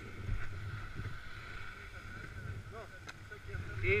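Low wind rumble on a helmet-mounted camera's microphone, with brief snatches of nearby voices and a single spoken word at the very end.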